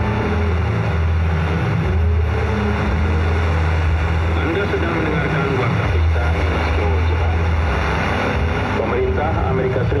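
Shortwave radio broadcast coming through a receiver's speaker, with a steady low hum and a haze of static. The voice in the signal is too faint and garbled to make out, and becomes clearer near the end.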